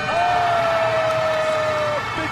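Arena end-of-period buzzer sounding as the game clock runs out: one long steady horn tone that sags slightly in pitch and stops just before the two seconds are up.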